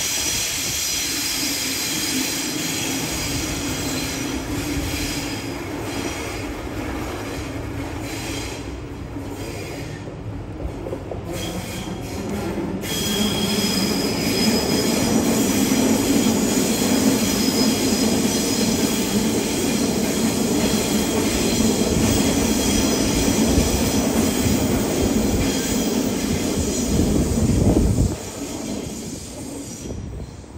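Double-deck electric suburban trains running past on the tracks below, with thin high wheel squeal over the running noise. The noise gets louder about halfway through as a train passes close by, then drops off suddenly near the end as the last car clears.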